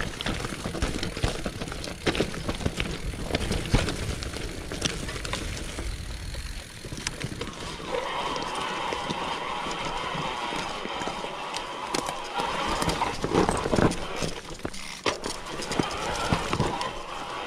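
Mountain bike rolling over a rocky forest singletrack: tyre rumble with frequent clicks and knocks from the bike rattling over stones. About eight seconds in the rumble eases and a steady whine joins, with the knocks going on over it.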